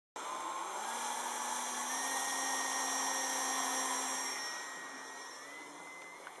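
Brushless electric motor (2208, 1800 kV) driving a 7x4 folding propeller on an RC flying wing in flight: a steady high whine that fades from about four and a half seconds in.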